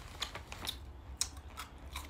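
Close-up crunching of crisp mini rice cake bites being chewed: a handful of sharp, dry clicks about half a second apart.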